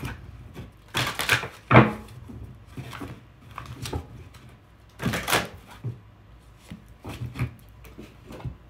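A deck of oracle cards being shuffled by hand: several bursts of crisp card flicking and rustling, the loudest about a second in and near two seconds in, with more around the middle and near the end.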